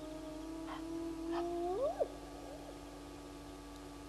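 A long, low animal call that holds its pitch and slowly rises, then sweeps sharply upward and cuts off about two seconds in.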